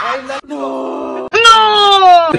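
A man's drawn-out wailing cry: a steady low moan, then a louder, higher cry that slowly slides down in pitch.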